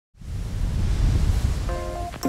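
Intro music for a title sequence: a loud, noisy whoosh with a heavy bass rumble swells in at once. Held musical notes come in near the end.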